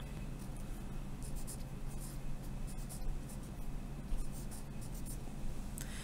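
Pen writing on lined notebook paper, a light scratching in short strokes with small pauses between them.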